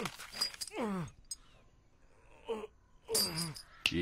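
A man groaning, with long moans that fall in pitch about a second in and again near the end. There is a sharp knock at the very start.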